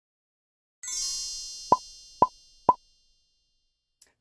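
Intro-animation sound effects: a high, sparkling chime starts about a second in and fades slowly. Three quick cartoon pops, about half a second apart, sound over it.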